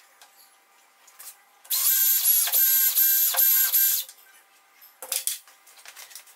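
Cordless drill running at speed for just over two seconds with a high whine that dips briefly several times, drilling a small hole through a guide hole in a steel rule into the tabletop. A short clatter follows as the drill is set down on the table.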